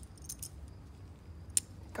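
Light clicking and jingling of a small dog's harness buckle and metal leash clip being handled, with one sharp click about one and a half seconds in.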